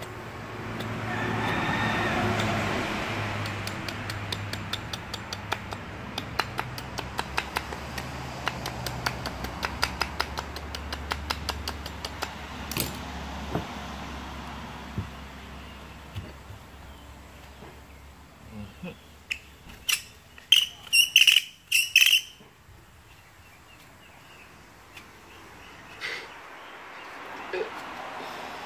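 Hand-carving wood with a knife: a fast run of short, sharp cutting clicks, then a few louder sharp scrapes later on.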